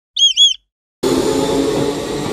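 Two quick warbling chirps, like a small bird, are followed about a second in by a steady machine hum that carries on.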